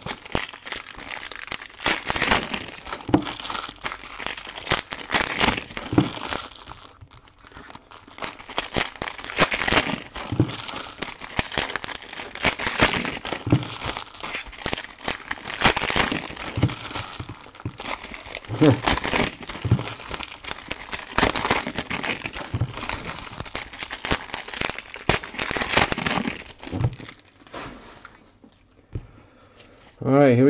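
Foil wrappers of Panini Prizm trading-card packs crinkling and tearing as packs are opened, with dense crackling throughout and brief lulls about seven seconds in and near the end.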